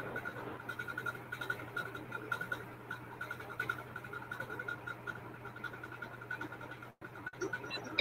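Low background noise from an open video-call audio line: a steady low hum under faint hiss, with a faint tone pulsing at an even rate. The audio cuts out completely twice, briefly, near the end.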